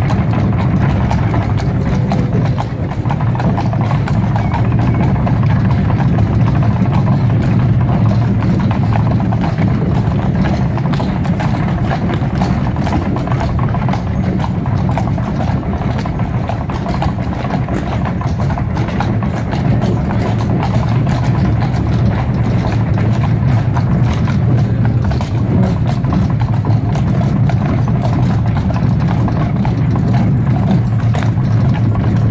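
A pair of horses' hooves clip-clopping on cobblestones at a walk, over the steady low rumble of the cart's wheels rolling on the cobbles.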